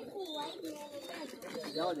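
Several caged domestic pigeons cooing, their overlapping coos wavering in pitch.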